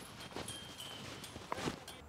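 Quiet outdoor ambience with a few faint clicks or knocks, one about half a second in and a couple near the end.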